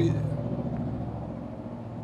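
Low rumble of a motor vehicle engine, fading steadily away.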